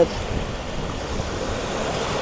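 Steady rushing noise of surf and wind on the microphone.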